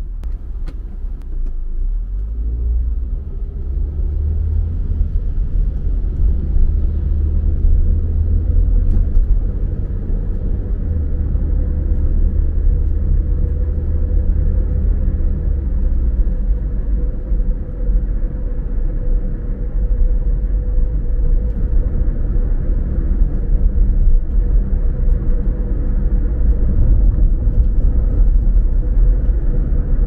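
Low rumble of a car's engine and tyres heard from inside the cabin, growing louder over the first few seconds as the car pulls away from a stop and gathers speed, then steady at cruising speed.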